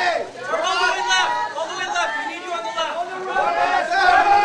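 A crowd of press photographers calling out and talking over one another, many voices overlapping without a break, to draw the posing subjects' attention.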